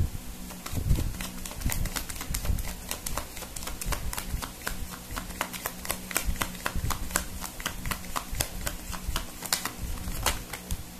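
Deck of tarot cards being shuffled by hand: a steady run of quick card clicks and flicks, several a second.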